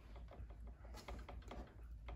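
Faint, quiet handling sounds with small soft clicks as raw bacon strips are laid one by one into a baking pan, over a low steady hum.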